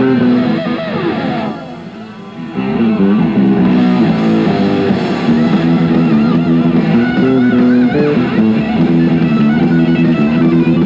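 A live heavy metal band with distorted electric guitars and bass playing a riff. The band drops away briefly about a second and a half in, then the full band comes back in about a second later.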